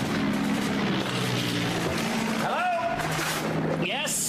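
Aircraft engines running in a steady low drone, the sound of an air raid, with the pitch stepping lower about a second in and again near the end.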